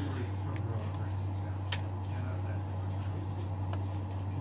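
A steady low hum, with a few faint light clicks and taps as a lemon wedge is squeezed by hand over a bowl of pho.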